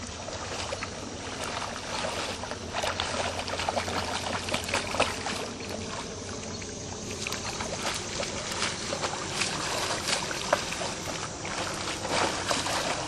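Irregular splashing and sloshing of shallow, weedy water as a hooked buffalo fish thrashes and a wader moves through it, with many sharp splashes, busier after the first second or two.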